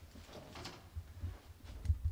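Faint handling noise: soft low thumps and clothing rustle rubbing on a clip-on microphone as hands move at the waist, the strongest bumps near the end.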